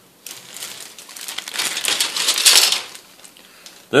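Clear plastic bag crinkling as plastic model-kit parts are pulled out of it, loudest about two and a half seconds in.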